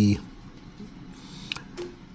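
A man's drawn-out hesitation syllable ('the…') ending just after the start, then low room noise with a few faint clicks.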